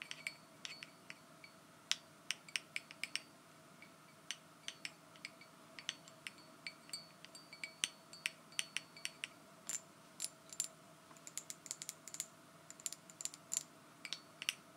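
Long false fingernails tapping irregularly on a glass jar and its ridged metal screw lid: quick, sharp clicks, a few a second, some with a brief bright ring.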